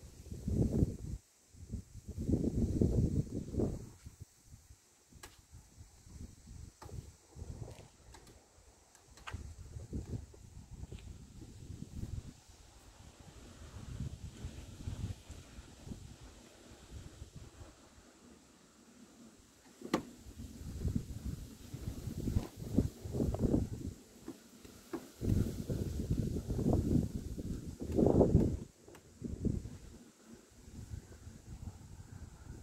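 Wind buffeting the microphone in irregular gusts, with a few sharp clicks and knocks from the car's rear seat fittings being handled.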